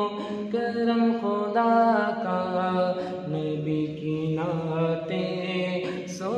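A man's voice singing a naat unaccompanied, drawing out long held notes that waver and glide between pitches in a melismatic line.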